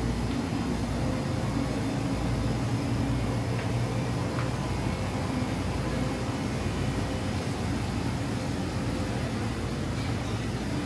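Steady low hum of refrigerated display coolers and air conditioning, with a couple of faint ticks about four seconds in.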